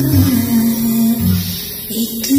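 Instrumental backing music with guitar: a held melody line over low bass notes that change about once a second, easing slightly in loudness near the end.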